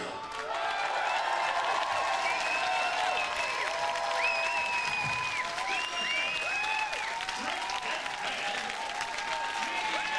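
Studio audience applauding and cheering, with a few long, shrill whistles in the middle.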